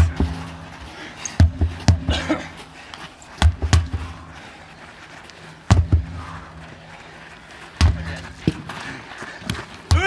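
Sledgehammers striking a large rubber tractor tyre: dull heavy thuds about every two seconds, several of them coming in quick pairs.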